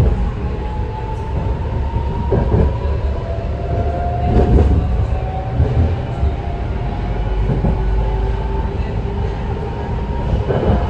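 Inside a moving BART Legacy Fleet rapid-transit car: a steady low rumble of steel wheels on rail, under a thin motor whine that slowly rises in pitch. A few knocks from the track come through along the way.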